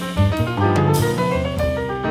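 Acoustic jazz from a quartet recording: drum kit and cymbals playing steady strokes under piano chords and low bass notes.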